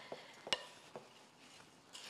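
A few light clicks and knocks of a utensil against a mixing bowl as oat granola mix is stirred, the clearest about half a second in.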